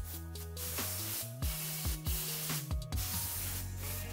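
Background music with a steady kick drum and bass line, over the even hiss of a rustproofing applicator gun spraying product through a flexible hose into a car's engine bay.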